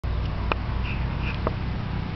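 Steady low rumble of handling noise on a handheld camera's microphone as it is carried along, with two faint clicks, about half a second and a second and a half in.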